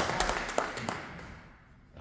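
A small audience clapping, the claps thinning out and dying away about a second in.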